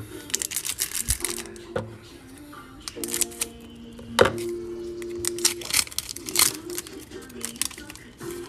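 Foil Pokémon booster pack crinkling in short crackles as it is handled, over background music with held notes.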